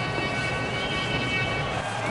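Steady, indistinct background din with a few faint steady humming tones running through it.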